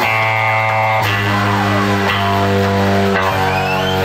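A live electric blues band playing an instrumental passage on electric guitars and drums, with held notes that change about once a second and occasional bent guitar notes.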